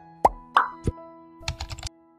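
Animated-intro sound effects: three quick cartoon pops that slide in pitch in the first second, then a rapid run of typing clicks, over soft background music.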